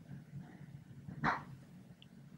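A single short dog bark a little past a second in, over a faint steady low hum.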